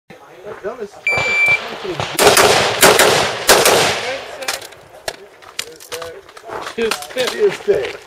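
Electronic shot timer gives one steady high start beep, then a rapid string of gunshots follows about a second later, several cracks in under two seconds, with a few more spaced shots afterwards.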